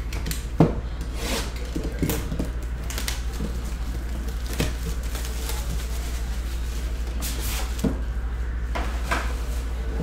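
Clear shrink-wrap being stripped off a sealed trading-card box and crumpled, with scattered clicks and knocks as the box is handled. A steady low hum runs underneath.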